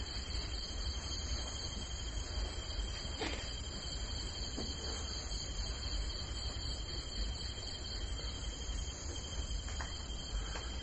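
Steady high-pitched trilling of an insect chorus in several layered pitches, over a faint low hum.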